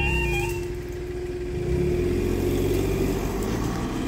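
Level-crossing yodel alarm, two tones warbling back and forth, cuts off about half a second in as the barriers rise. Car engines then pick up as the queued traffic pulls away across the crossing, over a steady hum.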